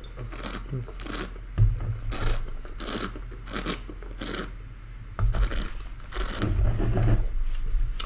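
A wine taster sipping red wine and drawing air through it in the mouth: a dozen or so short, irregularly spaced rasping slurps.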